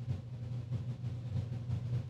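A steady low hum of background room noise.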